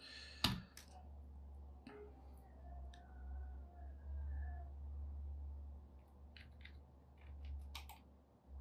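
Scattered computer mouse clicks and keyboard key presses, a few single clicks and a short cluster near the end, over a faint low steady hum.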